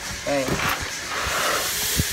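A small foam box being handled, with a few light knocks and then a soft, even rasping hiss through the second half, like foam rubbing on foam.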